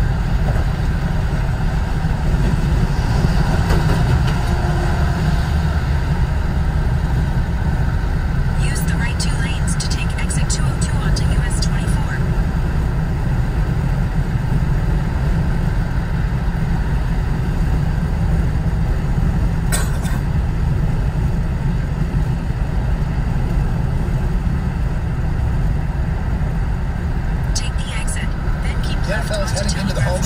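Steady low road and engine rumble inside a car's cabin at freeway speed. Brief patches of faint clicking come about nine seconds in and again near the end.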